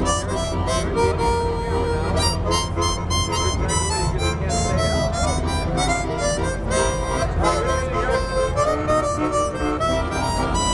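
Suzuki SSCH-56 Chord 56, a 14-hole chord harmonica, played into a handheld microphone: full chords blown and drawn in a steady rhythm, changing every half second or so.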